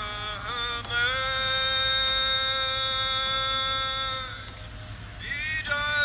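Music with a chant-like singing voice that slides in pitch, then holds one long steady note for about three seconds before sliding notes resume near the end.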